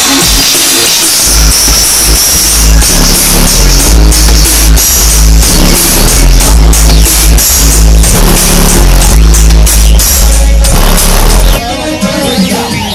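Electronic dance music played very loud through a car audio system's pair of large subwoofers, the deep bass dominating. The heavy bass comes in strongly about a second in and drops away near the end.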